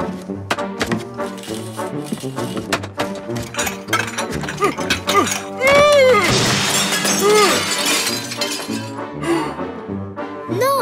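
Cartoon background music with sliding, whooping notes, punctuated by rapid sharp knocks and clattering crash-like hits. About six seconds in, a loud hissing burst of noise lasts a couple of seconds.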